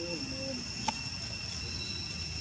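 Steady high-pitched drone of forest insects, held on two even tones, with a few faint short low calls near the start and a single sharp click about a second in.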